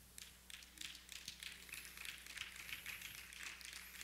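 Faint, scattered applause from the congregation: many small, irregular claps that keep up for about four seconds.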